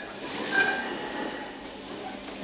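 Industrial sewing machines running in a workroom, a steady mechanical noise.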